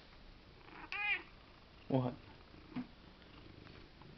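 A domestic tabby cat gives one short meow about a second in, its pitch rising and then falling.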